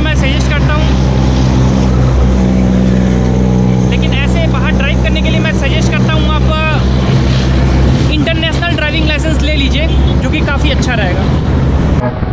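Steady low drone of heavy road traffic, with truck engines running on the highway. Clusters of quick high chirping or voice-like sounds come over it twice, from about four seconds in and again from about eight seconds.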